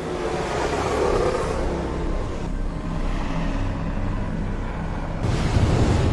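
Formula 1 car engines running at low pit-lane speed under a red flag, heard as a low steady hum with road and air noise. About five seconds in, the sound cuts to a louder rushing noise.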